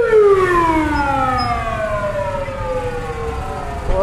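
An emergency vehicle siren wailing: its tone rises just before, then falls in one long slow glide lasting about three and a half seconds, over steady low road noise.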